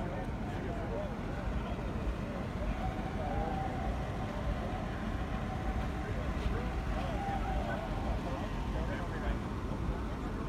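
Steady low outdoor rumble with faint voices talking in the distance.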